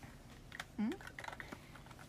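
Scattered light taps and clicks, like fingers typing, with a short rising 'hm' of a young woman's voice just under a second in.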